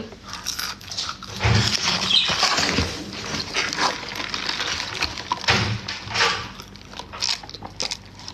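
Close-up chewing and wet mouth noises from someone eating french fries, irregular and noisy, with a few low bumps.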